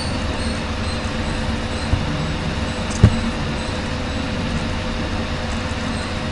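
Steady hiss and low hum of a desk microphone's background noise while a computer is being used, with two sharp computer mouse clicks, about two and three seconds in.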